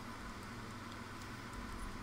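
Quiet, steady background hiss of room tone, with no distinct sound standing out.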